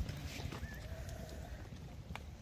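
A large flock of sheep on the move: many hooves shuffling and treading on a dirt track, with one short wavering bleat about a second in.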